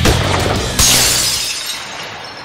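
The end of a heavy rock music intro, then a sudden glass-shattering sound effect about a second in that fades away as the music stops.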